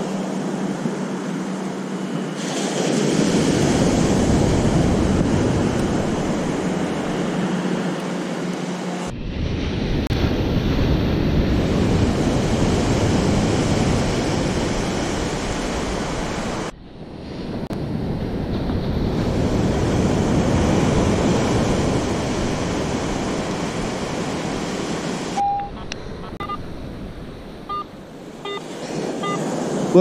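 Surf breaking and washing up the beach, with wind on the microphone, swelling and fading and broken by two abrupt cuts. Near the end, a few short faint beeps from a metal detector.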